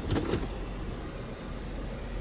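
Jeep Wrangler's 3.6-litre Pentastar V6 idling steadily, heard from inside the cabin, with a few light clicks right at the start.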